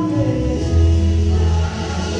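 A church worship team singing a gospel song together over keyboard accompaniment, with a strong held low note about halfway through.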